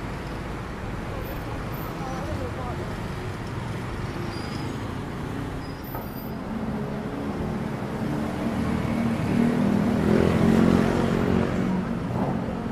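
Busy city street traffic: a steady mix of cars, buses and motorbikes running past, swelling louder in the last few seconds as a vehicle passes close.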